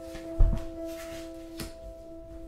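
Soft background music of sustained tones. About half a second in there is a dull thump, and later a lighter tap, as playing cards are dealt onto the cloth-covered tabletop.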